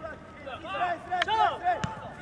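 Voices on a football pitch calling out in short, loud shouts about halfway through, with two sharp knocks in the middle of the calls.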